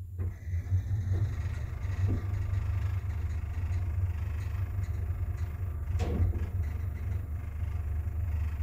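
1972 Wertheim (Schindler) traction elevator, modernized by ThyssenKrupp in 2006, travelling downward: a steady low rumble of the car running in the shaft, with a sharp click about six seconds in.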